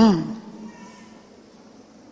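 A man's short drawn-out vocal sound through a public-address microphone, rising then falling in pitch and lasting about a third of a second at the very start. A pause of low room noise follows.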